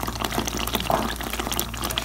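Hot oil sizzling in a pan as a ground spice paste fries in it, with a dense, steady run of small crackles and pops.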